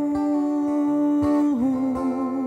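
A man's voice holds one long wordless note over a strummed acoustic guitar. About one and a half seconds in, the note dips and then wavers with vibrato.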